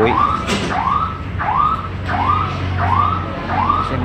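An electronic alarm or siren sounding a rising-and-falling yelp, repeated about twice a second, over a steady low hum.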